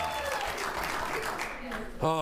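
Studio audience applauding, fading away towards the end, with the last of the show's music dying out in the first moment.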